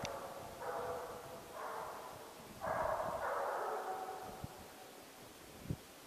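Estonian hound baying while running a hare's trail, in three drawn-out bouts of voice, the last and longest starting about two and a half seconds in. A short knock near the end.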